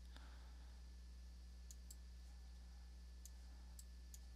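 Near silence: a steady low hum, with about half a dozen faint, short clicks in the second half.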